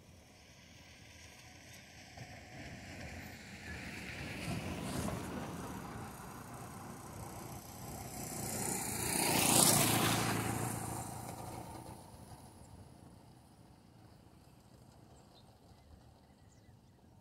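A road vehicle passing by: its noise builds slowly, swells about five seconds in, peaks near ten seconds and fades away.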